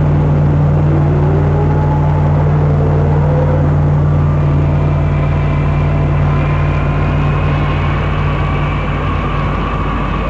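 Concorde 001's Olympus 593 jet engines running as the aircraft taxis: a loud steady low rumble with thin turbine whines slowly rising in pitch. The low rumble eases off near the end.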